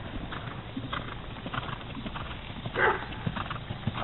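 Hoofbeats of a Thoroughbred horse trotting on dirt arena footing, a repeated clip-clop of the hooves. A brief louder sound comes about three seconds in.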